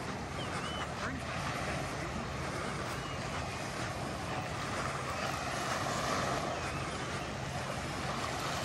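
Gentle surf washing on the beach with wind buffeting the microphone, a steady even rush. A few short high chirps come through about half a second in, near three seconds and around five to six seconds.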